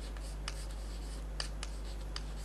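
Chalk writing on a chalkboard: a faint scratching with a few sharp taps as the strokes land, over a steady low electrical hum.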